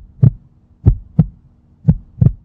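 Heartbeat sound effect: deep double thumps in a lub-dub pattern, three pairs about a second apart.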